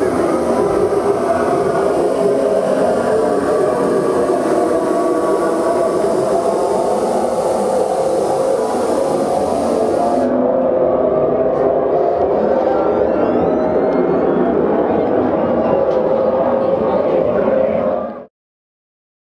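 Dark-ride show audio playing loudly: a dense, steady mix of music and voices from the animatronic monster scenes. A high hiss drops away suddenly about ten seconds in.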